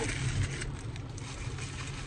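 Steady low rumble of a car idling, heard from inside the cabin, with light rustling of a paper food wrapper in the first second.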